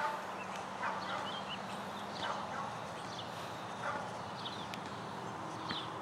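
Small birds calling with short chirps, one every second or so, over a steady background hiss.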